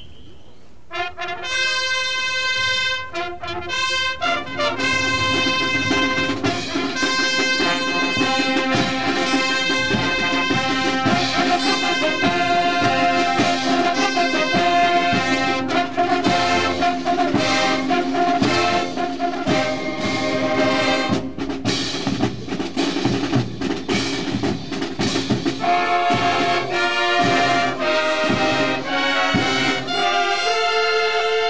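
Marching band playing a brass fanfare with drums: short separate brass chords start about a second in, then give way to continuous full-band playing with drum strikes.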